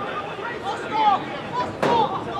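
Voices calling out across a football pitch, with a sharp thump of a football being kicked near the end.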